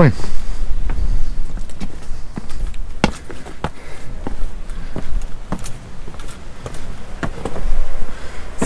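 Footsteps on rock, sharp irregular steps about one every half second to second, over a low steady rumble.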